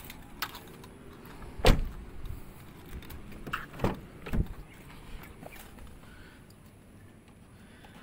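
Doors of a 2007 Toyota Innova being handled: one heavy car door shut about a second and a half in, then lighter clunks of a door and latch around the middle.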